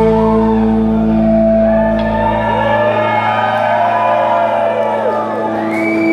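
A held electric guitar chord rings out through Marshall amps, its low bass notes dying away about halfway through. Audience members shout and whoop over the sustained chord.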